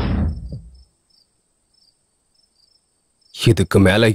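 Film soundtrack: a loud dramatic sound dies away within the first second. A near-silent pause follows, with faint, evenly repeated cricket chirps. Near the end a man's loud, shouted voice breaks in.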